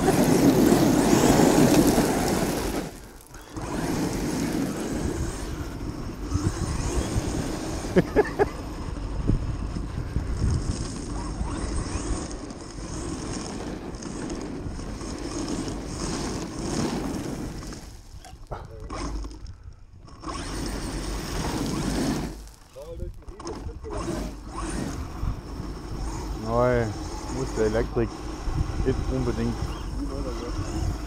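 Arrma Kraton 8S RC truck driving over gravel, heard from on board: a steady rumble of tyres, stones and wind, loudest in the first few seconds, with a few short breaks later on.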